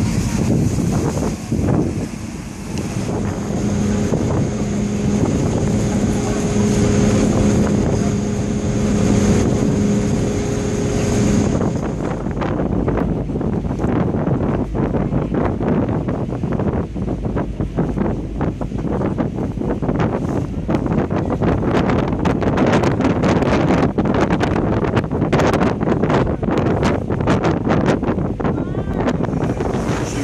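Damen ASD 2411 harbour tug's twin 16-cylinder turbocharged Caterpillar diesels running, a steady hum with a high whine over wash and wind noise on the microphone. About twelve seconds in the steady tones drop away and wind gusting on the microphone takes over, with engine rumble underneath.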